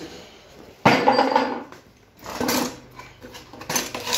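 Metal hand tools, wrenches and spanners, clattering against each other: a sharp, loud clatter about a second in, then two shorter rattles.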